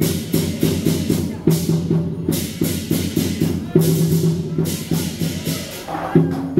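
Chinese procession percussion: large drums beating a fast, dense rhythm with cymbals clashing again and again over it, the accompaniment of a war-drum and lion-dance troupe.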